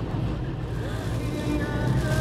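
Turkish music playing on the car's radio, heard inside the cabin over the car's steady low driving hum.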